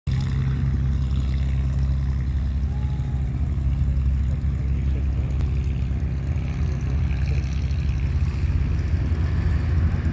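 Boeing B-17 Flying Fortress's four radial piston engines at takeoff power, a steady low drone heard at a distance as the bomber rolls and lifts off.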